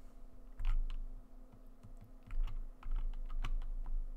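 Typing on a computer keyboard: irregular key clicks with a few heavier thumps among them, over a low steady hum.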